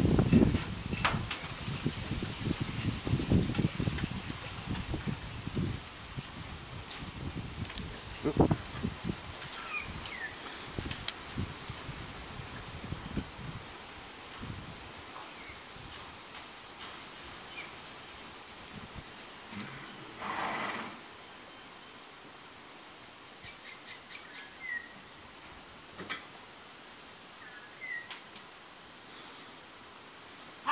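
Rustling and knocking handling noise from hands working filler rod and tool over a plastic hull, fading after about six seconds to a quiet room. Later come a few faint short high chirps, a brief hiss about twenty seconds in, and small clicks.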